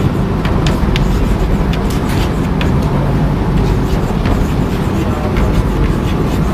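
Chalk writing on a chalkboard: short, irregular taps and scratches over a steady low rumble.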